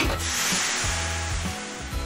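Background music with a hissing sound effect that starts at once and fades away over about a second and a half.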